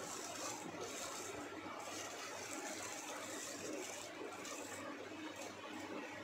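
A hand mixing chopped raw mango pieces with chili powder and ginger-garlic paste in a steel vessel: soft, uneven rustling and shuffling of the coated pieces, in repeated strokes. A faint steady hum lies underneath.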